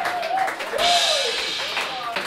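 Live audience clapping and cheering, with a long wavering whoop rising and falling in pitch and a cymbal wash from the band's drum kit about a second in.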